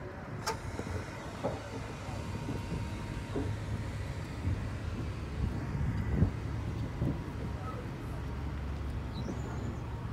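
Steady low rumble of an idling truck engine, with a few scattered knocks and thumps, the loudest a little after six seconds in.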